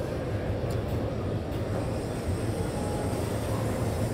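Steady background din of a large, busy exhibition hall: a constant low rumble with a hazy murmur above it and no distinct events.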